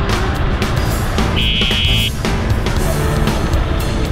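Background music with a steady beat, with a short held high note about a second and a half in.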